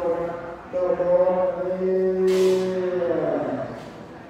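Khmer Buddhist monks' chant, amplified over a microphone: long, steadily held notes that fall in pitch and die away about three and a half seconds in.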